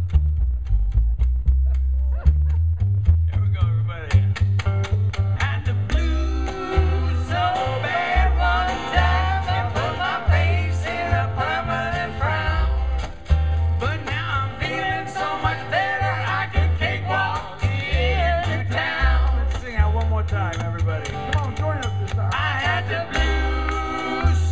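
Live jug band music, with an upright bass plucking a bouncing bass line under strummed acoustic guitar. About four to six seconds in, the full band comes in with a wavering lead melody on top.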